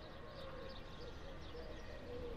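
Faint outdoor background: a steady low rumble with small birds chirping lightly.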